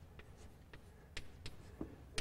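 Chalk writing on a blackboard: a handful of faint, short taps and scratches as letters are stroked onto the board.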